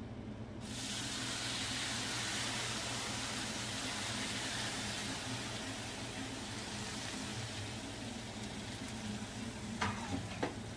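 Sugar syrup poured from a metal bowl over a steaming tray of hot baked baklava, sizzling and hissing as it soaks in. The sizzle starts under a second in and slowly eases off, and a click sounds near the end.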